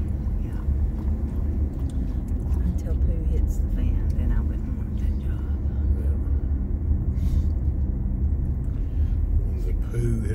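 Steady low rumble of a car's engine and tyres on a paved road, heard from inside the cabin while driving.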